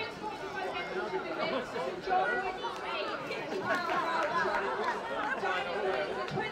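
Crowd chatter: many overlapping voices of spectators talking at once in the open street.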